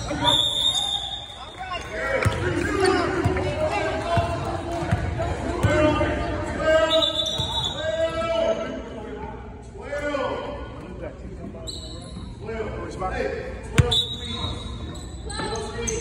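Basketball bouncing on a hardwood gym floor during a game, with players and spectators calling out throughout, echoing in a large hall. A sharper knock comes near the end.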